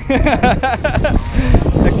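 Men laughing and calling out excitedly, over a steady low rumble of wind on the microphone.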